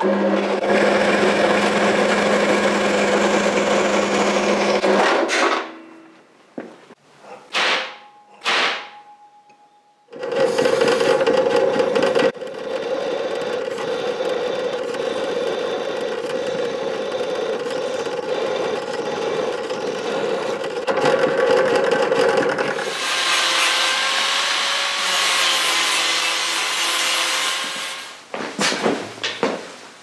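A power saw runs steadily for about five seconds and stops, followed by a few short knocks. About ten seconds in, a drill press starts and bores an 8 mm hole through 6 mm thick scrap steel; its sound changes about 23 seconds in and it stops shortly before some clicks at the end.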